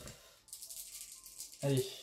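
A handful of gaming dice shaken in a cupped hand, a quick clattering rattle lasting about a second, just before they are thrown for a roll.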